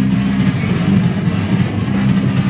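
Live punk band playing loud, distorted electric guitar and bass chords in a steady wall of sound.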